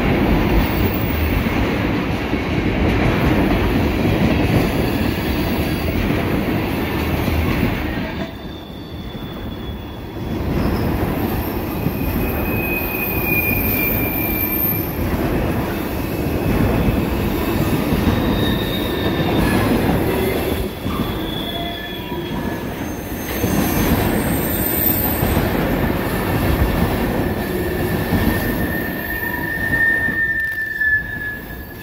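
Freight tank cars rolling past close by: a steady rumble of steel wheels on the rail, with high wheel squeals now and then, most clearly about halfway through and again near the end. The rumble drops briefly about eight seconds in.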